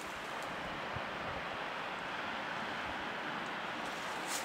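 Steady background hiss with no distinct event, and a couple of faint low thumps.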